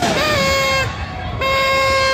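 Two blasts of a toy party horn, each held on one steady note for about a second, with a short pause between them.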